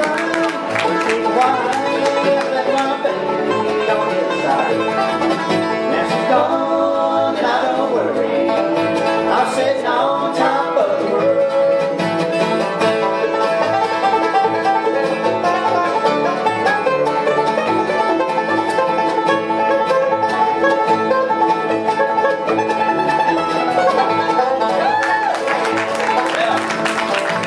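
Live bluegrass band playing an instrumental break on banjo, mandolin, acoustic guitars and upright bass, with a steady bass pulse under it. Partway through, the banjo steps up and takes the lead.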